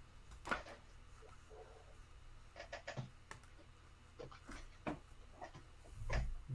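Trading cards being flipped through and handled by hand: scattered faint taps and rustles of card stock, a few of them bunched together near the middle.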